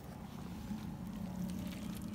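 A wooden board being lifted off damp worm compost by a gloved hand, with faint scraping and handling ticks, over a steady low hum.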